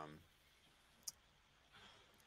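Near silence on a video call, broken by a single short click about a second in. The tail of a spoken 'um' ends just at the start.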